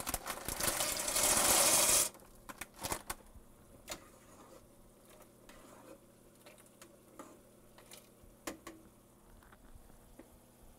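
Dry orecchiette pasta pouring from a plastic bag into a pot of boiling water: a dense rattle for about two seconds that stops abruptly. Afterwards, a few light clicks and knocks of a utensil stirring the pot.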